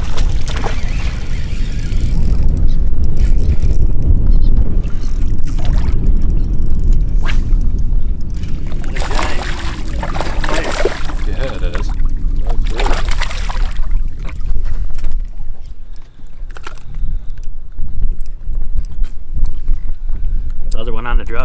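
A hooked smallmouth bass thrashing and splashing at the water's surface beside the boat, in a few bursts about halfway through, over a steady low rumble.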